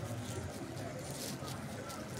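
Steady background street noise of a busy town centre: distant traffic and voices, with no single close sound standing out.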